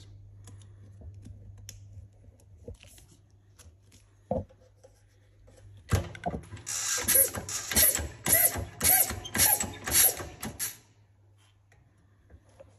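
White plastic push-fit pipe rubbing and squeaking against its push-fit fittings as it is handled and pushed home: a short squeak about four seconds in, then a run of loud scraping strokes, about two a second, for some four seconds before it stops.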